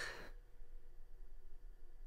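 A man's short, breathy exhale right at the start, a sigh of relief as his squeezed hand is let go, then quiet room tone.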